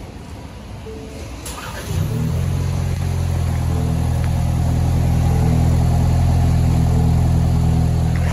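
2024 Ford Ranger's 2.3L EcoBoost four-cylinder engine catching about two seconds in and then idling steadily, heard close at the tailpipe.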